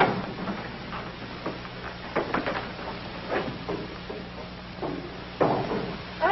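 Scattered irregular knocks and clunks over a steady low hum.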